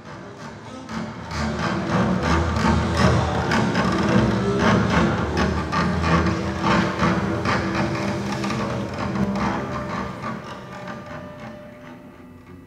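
A string quartet of violin, viola, cello and double bass plays a dense passage of rapid, percussive strokes over deep low notes. It swells up over the first two seconds and thins out over the last two.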